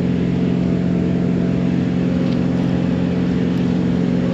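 An engine running steadily at a constant speed: an even, unchanging low hum.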